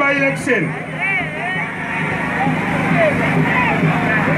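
A man speaking over a microphone and loudspeakers, with crowd babble behind him.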